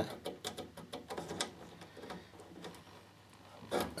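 Light clicks and taps of insulated spade crimp connectors being worked onto their tabs on the inverter's circuit board by hand. There is a quick run of small clicks in the first second and a half, then fainter scattered ones.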